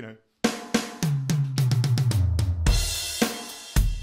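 Electronic drum kit playing a basic round-the-kit fill: quick strokes that step down in pitch across the toms, landing on a crash cymbal with kick drum, and a second crash-and-kick hit near the end.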